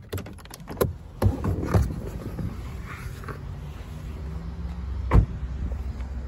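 Car door being opened and shut: a few clicks and knocks as the Alfa Romeo Giulia's driver's door is unlatched and swung open, then a solid thud about five seconds in as it closes, over a steady low rumble.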